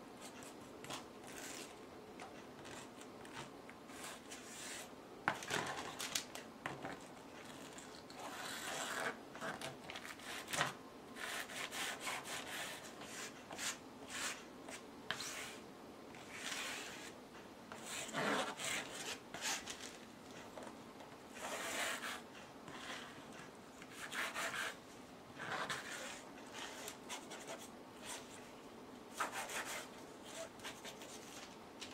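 A flat stick scraping and spreading white pour paint across a canvas panel, in irregular rubbing strokes that come every second or two.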